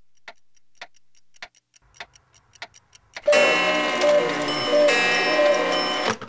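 Analogue clock ticking about twice a second. About three seconds in, a much louder pitched, voice-like sound cuts in and drowns out the ticks.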